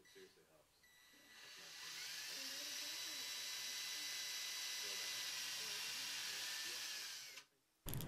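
Cordless drill with a thin bit drilling holes into a hardened Bondo body-filler lure body. The motor's whine winds up about a second in, holds steady for about six seconds, then stops.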